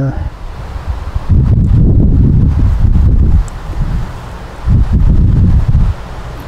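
Wind buffeting the microphone outdoors: two loud, low gusts of rumble, the first lasting about two seconds from just over a second in, the second shorter near the end.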